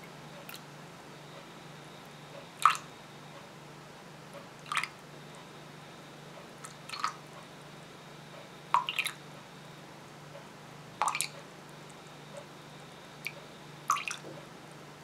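Liquid dripping and trickling from a small bottle's narrow spout into a stainless steel bowl already holding some liquid, in short splashy bursts about every two seconds.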